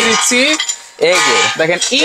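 Dry chunks of food dropped by hand into an Orpat blender's empty stainless steel jar, clattering against the metal.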